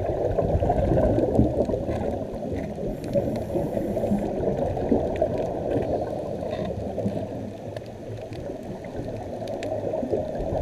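Muffled underwater bubbling of scuba regulator exhaust, heard through an underwater camera housing: a steady, dull gurgling rumble that eases off a little about seven seconds in.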